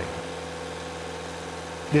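Geo Pro Dredge's on-board engine running at a steady, even hum, with no change in speed.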